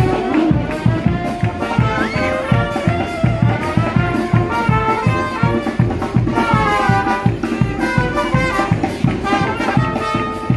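Marching brass band playing a lively tune, brass melody over a sousaphone bass line and a quick steady beat.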